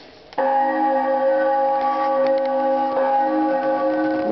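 Animated Halloween skeleton prop playing a sustained, bell-like chord of several steady tones through its speaker, starting about half a second in.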